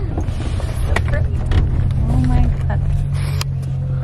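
Low, steady rumble of a minivan driving slowly, heard from inside the cabin, with a few sharp clicks and faint voices over it.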